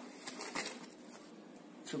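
Faint rustling and a few light clicks from a paper sugar bag being handled, mostly in the first half second, then quiet room tone.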